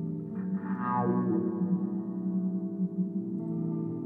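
Violin bowed through electronic effects over layered sustained drone tones, with a falling glide in pitch about half a second in.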